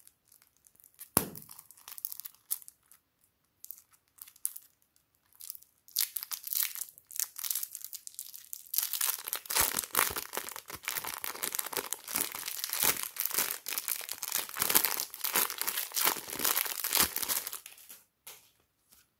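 Thin plastic piping bag crinkling as it is peeled off a log of soft green clay: scattered crackles at first, then dense, continuous crinkling from about halfway through until just before the end.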